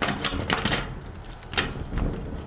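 Metal padlock and latch on a corrugated steel roll-up door rattling and clicking as hands work the lock off. There is a quick cluster of clicks in the first second, then a single click about a second and a half in.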